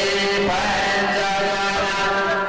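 Devotional chant music: a voice holding long, slowly shifting notes over a steady drone.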